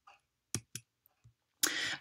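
Two sharp clicks about a quarter second apart on a computer, advancing a presentation slide to show its next line, then a short breath near the end.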